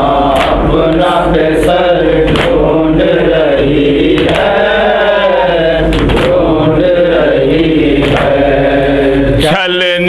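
Men's voices chanting a noha, a Shia lament in Urdu, in long, slowly rising and falling melodic lines over a steady low hum. Near the end the hum stops and a single male voice carries on.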